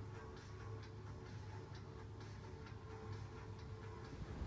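Faint, steady low hum with light, irregular ticks and clicks a few times a second.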